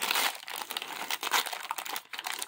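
A small plastic wrapper being unwrapped and crumpled by hand, crinkling in quick irregular crackles.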